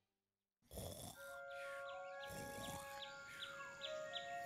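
After a brief silence, a faint outdoor garden soundscape fades in: soft held music tones with repeated short, falling bird-like chirps, about three a second in the second half.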